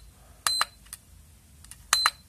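IMAX B6 LiPo balance charger giving two short high beeps as its Inc. button is pressed, about half a second in and near the end: the charge current setting being stepped up.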